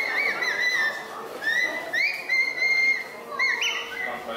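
Birds calling with repeated high whistled notes, each rising, holding briefly and falling, several overlapping, over faint background voices.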